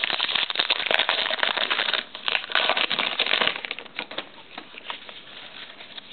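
Trading-card pack wrapper crinkling and cards being handled by hand: dense crackling for about three and a half seconds, then a few scattered clicks before it quiets.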